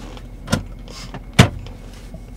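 Two clicks from the glove box of a 2007 Mercedes-Benz GL450: a light one, then a much louder, sharp snap as the lid with the drop-down CD changer is shut and latches.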